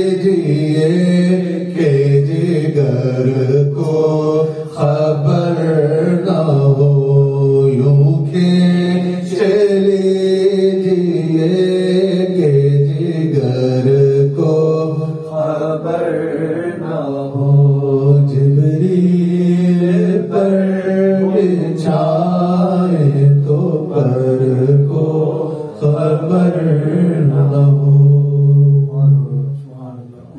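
A man chanting devotional verses unaccompanied, in long held melodic lines, his voice fading out at the very end.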